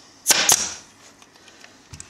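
Long-nosed upholstery staple gun firing into a plastic back tack strip: two sharp cracks about a fifth of a second apart, a third of a second in.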